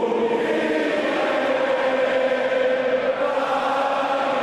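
Many voices chanting together in long, steady held notes.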